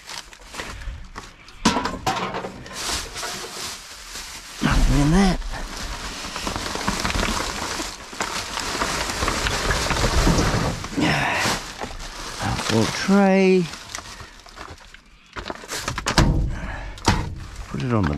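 Plastic garbage bags rustling and crinkling as they are rummaged through and shifted inside a steel dumpster, with occasional dull thunks.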